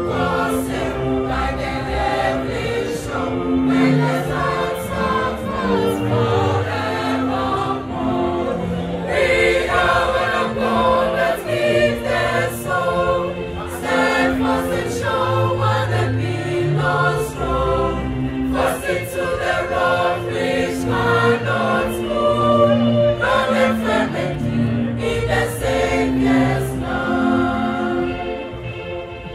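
Mixed choir of women's and men's voices singing in harmony, holding chords over a low bass part.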